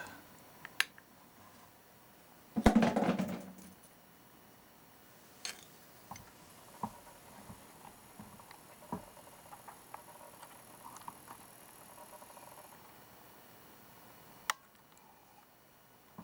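A plastic spoon clicking lightly against a glass jar and a tabletop a few times. About three seconds in there is one louder knock and scrape as a lump of wet salt crystals is set down.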